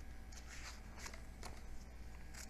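Glossy paper pages of a hardback book being turned by hand: a few soft, faint rustles and one light flick about one and a half seconds in.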